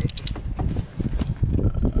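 Car door being unlatched and pulled open: a click from the handle and latch at the start, then bumps and rustling from the door and handling. A faint steady tone begins near the end.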